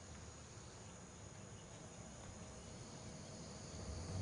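Faint, steady chorus of night insects such as crickets, over a low background rumble.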